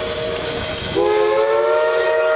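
Steam locomotive's chord whistle, several notes sounding together. About a second in it eases off to a hiss, then comes back with its pitch rising as the valve opens again, before holding steady.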